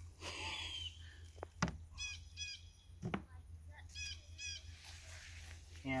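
A bird calling in the background: two short runs of quick repeated calls, about two seconds and four seconds in. A few faint sharp clicks fall between the runs.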